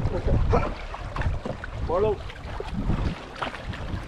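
Wind buffeting the microphone while canoes are paddled on open loch water, with faint paddle strokes. A voice calls out briefly about two seconds in.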